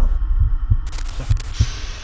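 A low, heartbeat-like thumping pulse, about three thumps a second, with a short burst of hiss about a second in.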